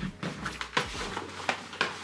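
Hard-shell suitcase being unzipped and opened: a run of irregular clicks and scrapes from the zip and the plastic shell being handled.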